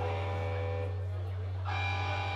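Live rock band music: sustained electric guitar chords ring out and slowly fade over a steady low drone, and a new chord is struck near the end.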